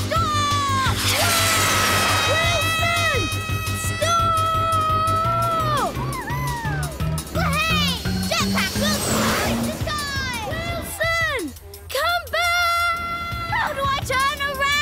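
Cartoon soundtrack: background music whose bass line climbs step by step in the middle, two rushing whooshes of a jet pack taking off and flying, and long wordless vocal cries from a character.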